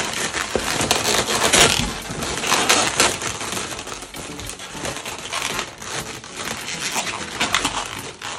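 Inflated Qualatex 260Q chrome latex balloons being pinched and twisted together by hand: latex rubbing against latex in a continuous run of crackles and squeaks.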